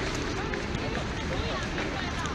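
Outdoor crowd hubbub: many people talking at once, none of it clear, over a steady background of city noise.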